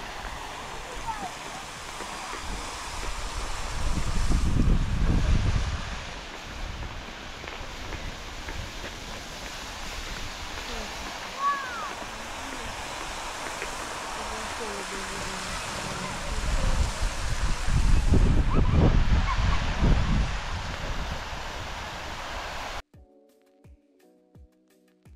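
Steady rushing hiss of a tall fountain jet of the Peterhof fountains, its water spraying up and falling back, with two longer stretches of louder low rumble and a brief high chirp midway. Near the end it cuts off abruptly to soft music.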